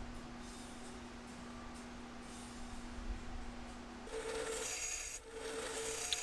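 Faint steady hum, then about four seconds in a belt sander comes in, a steady whine with a rasping hiss as the steel knife blank is ground against the belt for profiling.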